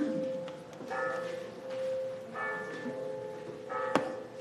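Church bell tolling, struck about once every second and a half, each stroke ringing on under the next. A single sharp knock comes right at the end.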